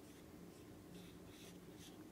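Near silence, with the faint soft scratch of a fine paintbrush stroking PVA tempera paint onto textured paper a few times.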